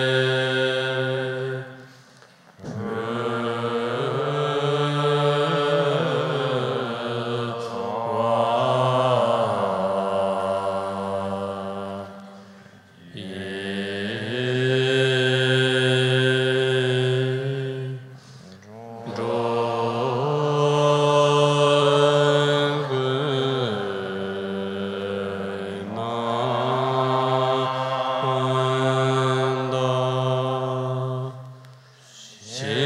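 Slow, melodic chanting of a Tibetan Buddhist mantra by a deep male voice, long held notes in drawn-out phrases with brief pauses for breath between them.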